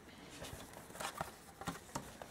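Faint taps and rustles as a spiral-bound paper journal is handled and turned over on a tabletop, about five small clicks spread across two seconds.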